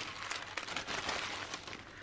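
Tissue paper rustling and crinkling as it is folded back to unwrap a package, dying down near the end.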